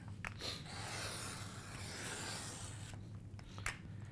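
A handheld craft cutting blade drawn along a plastic guide track, slicing through kraft poster board in one continuous stroke of about two and a half seconds.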